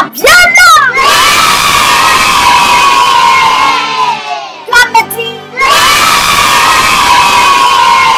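A crowd of children shouting and cheering together: two long cheers of about three seconds each, the first starting about a second in and the second about halfway through, with short shouts before and between them.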